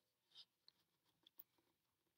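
Near silence: faint room tone with two tiny faint clicks, about half a second and a second and a half in.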